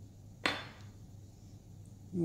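A single sharp knock of a hard object, with a brief ringing tail, about half a second in, over a low steady hum.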